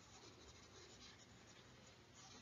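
Near silence, with faint scratching of a stylus on a pen tablet as handwritten working is rubbed out.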